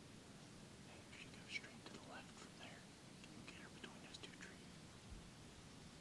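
A hunter whispering faintly in short bursts from about a second in to about four and a half seconds in, against near-silent woods.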